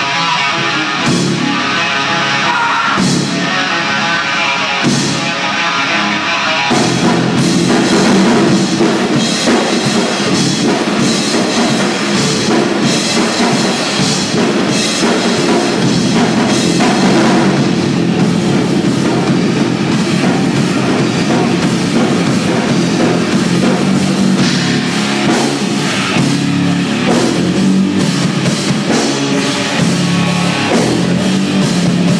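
Live rock band with electric guitars and drum kit playing loudly: an opening with heavy accented hits about every two seconds, then the full band comes in with driving drums about seven seconds in.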